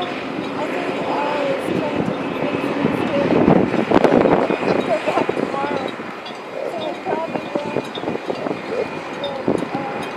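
Indistinct voices talking over steady outdoor background noise, with a louder rushing swell about four seconds in.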